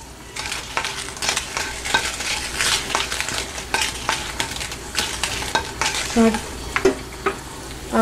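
Dry red chillies sizzling in hot oil in a nonstick wok, with a spatula scraping and stirring them in quick, repeated strokes. The chillies are being fried until their skins darken slightly.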